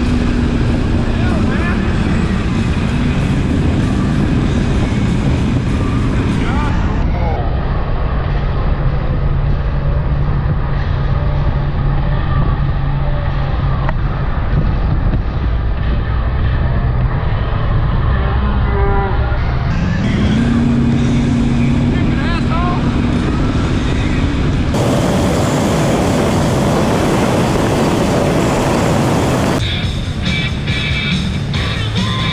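Bass boat outboard motor running at speed, with wind and rushing water over the hull. The engine note drops about a quarter of the way in and rises again about two-thirds through.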